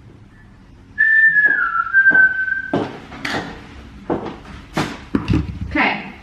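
A person whistling one clear note that steps down slightly to a lower held note, lasting about two seconds, followed by a run of knocks and thuds.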